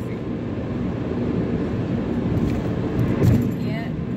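Steady road and engine noise inside a moving car's cabin, with a brief voice sound near the end.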